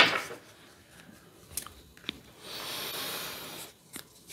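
Tarot cards being handled: a few soft clicks, then about a second of rustling as cards slide off the deck, and a sharp tap near the end as a card is laid on the table.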